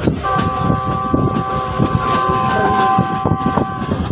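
A diesel locomotive's multi-note air horn, on the GE U40 pulling the train, sounds one steady chord for about three and a half seconds and cuts off sharply near the end. Under it, the coaches rumble and clack along the track.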